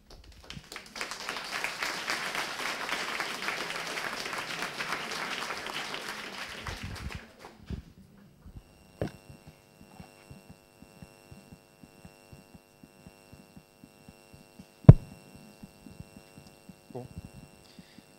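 Audience applauding for about six seconds at the end of a lecture. After that comes a steady electrical hum with many light clicks and one sharp loud knock near the end.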